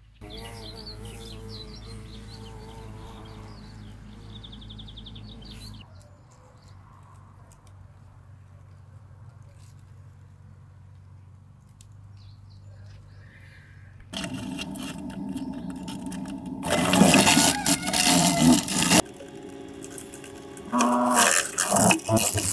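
A wasp's wings buzzing close to the microphone. The buzzing gets much louder about two-thirds of the way in, with loud rough stretches of a few seconds each, after a quieter steady hum.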